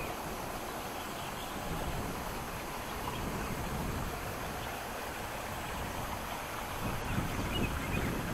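Steady wind rumble on the microphone with the running noise of a vehicle moving along a road.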